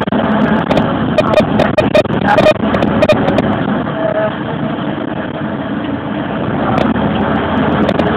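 Service bus driving, heard from inside the passenger cabin: steady engine and road noise with frequent short clicks and knocks throughout.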